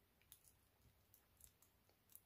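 Near silence with a handful of faint, scattered clicks of long press-on fingernails tapping and handling.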